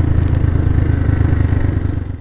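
A 125cc motorcycle engine idling with a steady low rumble.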